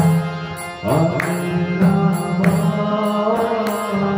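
Kirtan: a harmonium holds steady sustained notes, and a male voice starts singing the chant about a second in. Regular percussion strokes keep time throughout.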